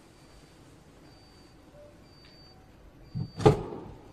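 Two knocks about three seconds in, a dull thump followed by a louder, sharp knock that dies away quickly, as of something bumping inside the small electric vehicle's cab. A faint high-pitched tone comes and goes under them.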